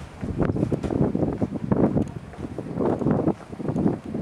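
Wind buffeting the camera microphone in irregular gusts, a low rumbling noise that rises and falls.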